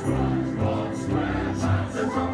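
Music with choir-like sustained voices over a slow low beat.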